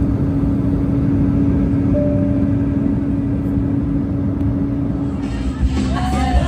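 Airliner cabin noise in flight: an even, steady roar with a constant low hum. Music comes in just before the end.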